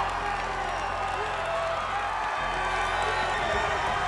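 Background music with a steady bass line under a crowd of students cheering and shouting in stadium stands.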